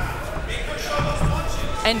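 Voices shouting in a large hall, typical of cornermen calling instructions to an MMA fighter, with a few dull thuds about a second in.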